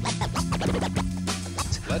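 Vinyl record scratched by hand on a Technics SL-1200/1210MK7 turntable: rapid back-and-forth scratches over a playing beat.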